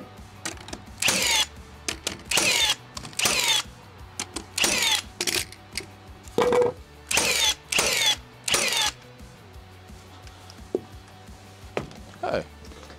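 Handheld power tool run in about eight short bursts of roughly half a second each, spaced irregularly.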